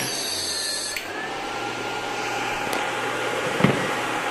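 Fan-cooled electrofishing inverter running: a steady rush from its two cooling fans, with a thin electronic whine that drops to a lower pitch about a second in. A single sharp click comes near the end.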